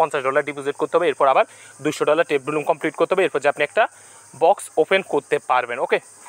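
A man speaking in quick phrases, with short pauses. A steady high-pitched hiss runs underneath and carries on after the voice stops.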